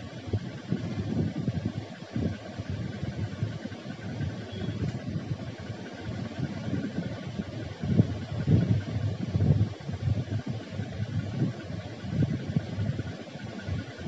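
Wooden spatula stirring and scraping dry lentils, dried red chillies and curry leaves around a pan as they roast for idli podi: an irregular, rough rustling scrape, with stronger strokes about eight to ten seconds in.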